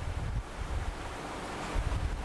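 Steady background hiss with a low, uneven rumble, picked up by the microphone.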